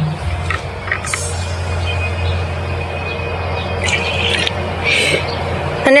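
Cordless drill with a paddle mixer running steadily, stirring water-based paint in a five-gallon plastic bucket as it is thinned with water to spraying consistency.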